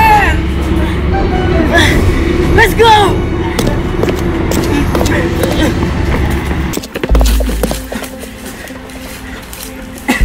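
Dramatic background film score with a steady low drone, under short wordless vocal exclamations in the first few seconds. About seven seconds in, a deep bass hit lands and the music goes quieter.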